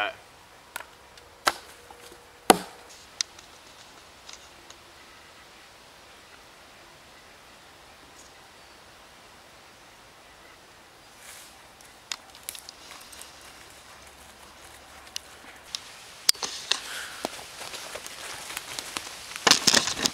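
A few sharp knocks of split wood pieces being handled and set down, the loudest about two and a half seconds in, then a faint quiet stretch of forest. From about twelve seconds in, rustling in dry fallen leaves with scattered knocks of wood, growing louder near the end.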